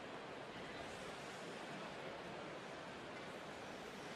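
Faint, steady background hubbub of an ice-hockey arena crowd, with no distinct cheers or impacts.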